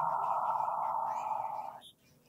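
A woman's long, slow audible exhale, a steady breathy hiss that fades and stops just before the end: the controlled out-breath of a paced breathing cycle held during a stretch.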